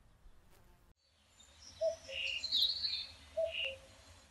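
Birds chirping, with short calls and two similar call phrases about a second and a half apart, over a low steady hum. The chirping starts about a second in, after a brief hush.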